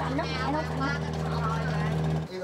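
An engine running with a steady low drone, with people talking in the background over it.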